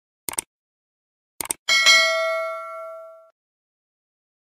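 Sound effect of two quick double mouse clicks, then a bright bell ding that rings for about a second and a half before cutting off.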